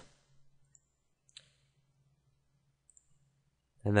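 A single sharp computer-mouse click a little over a second in, then a couple of much fainter ticks near the end, over a faint low hum; otherwise near silence.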